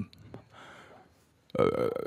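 Near silence for about a second and a half, then a man's voice gives a short "eh" lasting about half a second.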